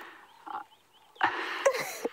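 A man's short, breathy laugh about a second in.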